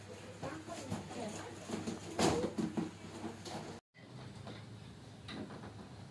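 A sheet of black vinyl upholstery material rustling and flapping as it is handled and smoothed over a car headliner, with the loudest rustle about two seconds in. The sound cuts off abruptly just before four seconds, then only faint light rustles remain.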